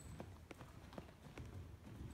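Faint hoofbeats of a ridden horse moving on arena dirt footing, a quick, slightly uneven run of knocks several times a second.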